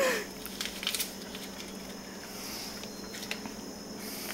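Faint kitchen handling sounds as ingredients are added to a blender jar: a few light clicks and rustles, mostly in the first second, over a faint steady hum.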